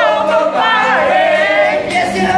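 A mixed group of men and women singing a song together in held, sustained notes.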